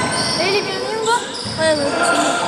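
Indoor basketball game: the ball bouncing on the court floor, with short high squeaks and players' voices echoing in the gym hall.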